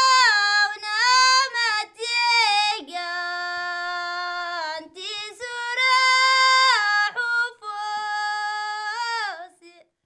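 A single high voice singing unaccompanied: long held notes joined by slides and ornaments, in several phrases with short breaks between them.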